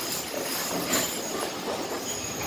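Harnessed draft horses and the wagon they pull passing close at a walk: a steady rolling, rattling noise of wagon wheels, harness and hooves on sand.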